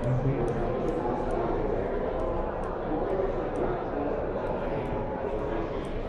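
Indistinct talk from several voices overlapping in a steady crowd murmur, with no single voice clear.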